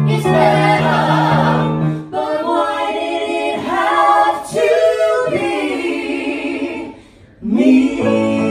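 A man and two women singing live in close harmony. Low held notes in the first couple of seconds give way to rising and falling sung phrases, with a short break about seven seconds in before the voices come back.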